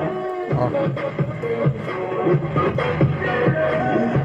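Music played through an AB2000 car amplifier module on its bench test, just powered up after its shorted output transistors were replaced; it plays normally.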